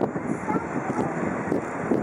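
Steady rumble of a slowly approaching freight train, with wind on the microphone.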